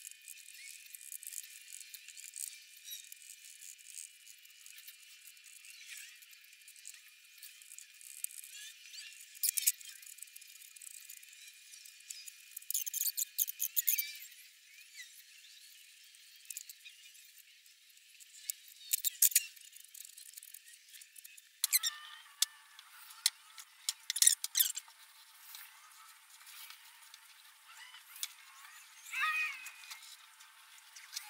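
Scraping and squeaks of a plastic spreader working wood filler into gaps in a pallet-wood tabletop. The scrapes come in short scattered bursts with quieter stretches between, and they sound thin, with no low end.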